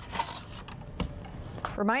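Peeled cardboard tube of refrigerated biscuits being handled, its paper wrapper rustling as the dough rounds are slid out, with one sharp tap about a second in.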